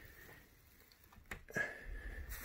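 A single sharp click of a rocker wall light switch being flipped on, a little over a second in, followed by faint handling noise.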